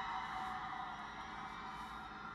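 Audience applause and cheering in a large auditorium, slowly fading, with steady background music underneath.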